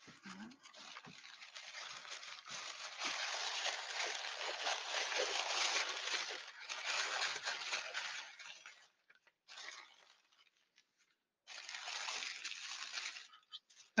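Paper rustling and crinkling as newspaper-print packing paper is handled and pulled out of a box, running for about the first nine seconds. After a brief pause there is another stretch of rustling near the end.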